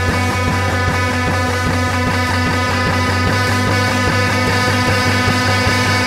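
Instrumental passage of a psychedelic rock song: a band playing guitars over a steady bass line and drums, with no vocals.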